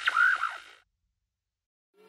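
Electronic intro sound effect: a few quick rising and falling pitch sweeps over a steady high tone, fading out within the first second, then dead silence.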